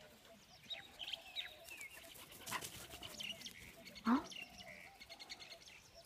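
Small birds chirping, with quick trills now and then. About four seconds in comes one short, sharply rising animal cry, the loudest sound.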